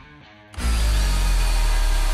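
A Euroboor EBM.36+LP/P-18V cordless low-profile magnetic drill, running on an 18-volt battery, bores its annular cutter into steel plate. The sound starts suddenly about half a second in and then stays loud and steady.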